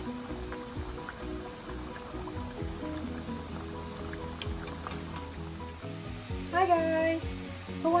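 Background music with steady held notes over the faint sizzle of potato strips deep-frying in hot oil in a pan, with a few light ticks about halfway through. A voice comes in near the end.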